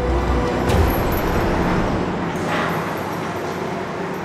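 Steady low rumble of machinery on a railway tunnel construction site, with a short clank just under a second in and a brief hiss around two and a half seconds.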